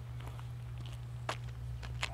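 CSX diesel locomotive's engine running with a steady low rumble as it rolls slowly toward the camera through switches, with a few sharp clicks, the loudest just past halfway.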